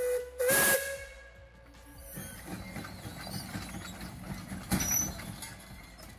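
Lombard steam log hauler sounding a short steam whistle with a loud rush of steam hiss in the first second, then its engine running quietly with a low rumble.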